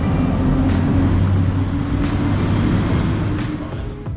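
Loud, steady low rumble of road traffic with background music over it, a beat of light ticks running through; the rumble drops away near the end, leaving the music.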